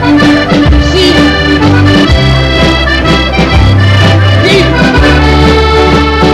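Accordion playing a tune in waltz time, with melody notes over a steady, repeating bass-chord accompaniment.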